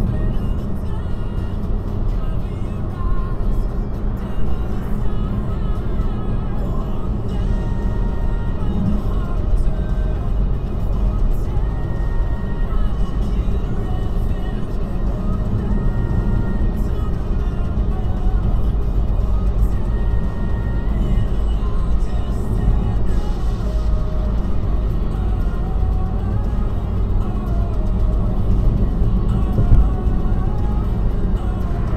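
Steady low road and engine rumble inside a moving car's cabin at about 47 mph, with music playing quietly over it.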